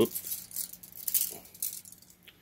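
Light rustling and jingling of a tape measure being handled among the plant's leaves, in several short bursts.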